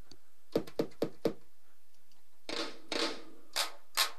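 Kick drum sample in FL Studio played live from a MIDI keyboard: a quick run of short hits about half a second in, a longer, noisier hit about two and a half seconds in, then a few single hits near the end.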